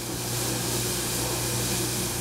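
Milk pouring in a steady stream from a plastic jug into a stainless steel saucepan, a continuous splashing.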